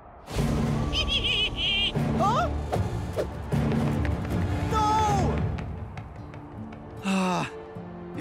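Cartoon background score with steady low notes, with brief wordless gasps and grunts over it and a short loud cry falling in pitch about seven seconds in.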